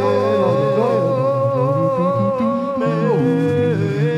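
Live rock band music: a long held high note sustained for about three seconds, then sliding down, over a steady bass line.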